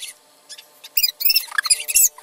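A one-year-old baby's short, high-pitched squeals and squeaks, coming thicker from about a second in, with a few small taps of her hands against the painted canvas.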